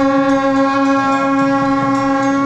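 Traditional procession music: a wind instrument holds one long, steady note, with faint regular drum beats underneath.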